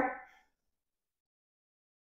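The trailing end of a woman's spoken word, then near silence with no audible sound.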